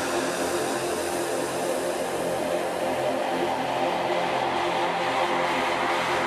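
Intro of a psytrance track: a steady, noisy electronic drone with several held tones underneath.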